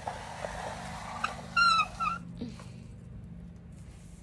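Pet prairie dog giving two short high-pitched squeaks, a slightly falling one about a second and a half in and a briefer one just after, over rustling in the hay.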